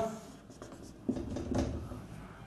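Dry-erase marker drawing on a whiteboard: a few short strokes from about a second in.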